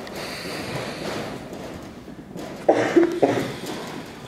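Two short squeaks of a dry-erase marker writing on a whiteboard, about three-quarters of the way through, over steady room noise.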